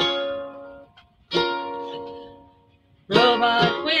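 A small lute strummed: two chords, about a second and a half apart, each left to ring and die away. About three seconds in, a woman starts singing over the strumming.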